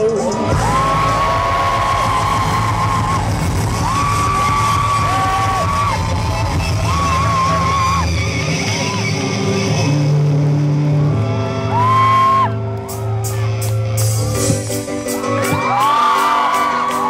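Live pop-rock band playing: singing with long held notes, one with vibrato, over electric guitar, bass and keyboard. After a brief dip about thirteen seconds in, a sharp regular beat comes in.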